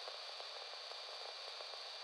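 Faint steady hiss with a thin high whine in it, unchanging and with no other sound.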